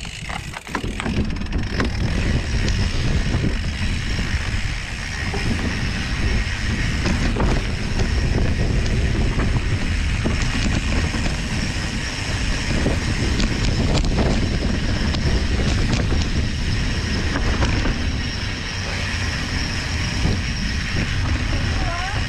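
Mountain bike riding along a dirt trail strewn with dry leaves: a steady rumble and rattle from the tyres and bike, with wind buffeting the microphone.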